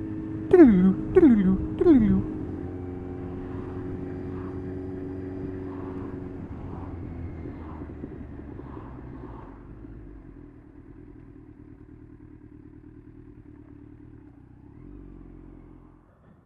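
Kawasaki Z1000 inline-four engine as the bike slows down. It gives three quick falling revs in the first two seconds as it changes down, then runs at a steady note that drops lower and quieter from about six seconds in. It keeps going at a low, quiet idle-like run until it cuts off at the end.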